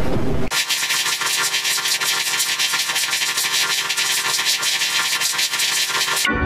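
Heavily processed, effect-distorted audio. About half a second in, it switches suddenly from a full, bass-heavy sound to a harsh, bright, hissy scratching noise with the bass cut away and faint steady tones underneath.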